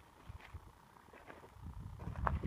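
Faint footsteps on rocky ground: a few soft scuffs over a low rumble.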